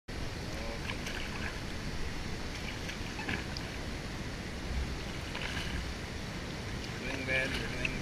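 Steady rush of river water heard from a kayak on the water, with faint voices now and then and a spoken word near the end.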